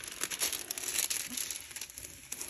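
Clear plastic cover sheet on a rolled diamond painting canvas crinkling with irregular light crackles as hands press and smooth it flat to take out the bends.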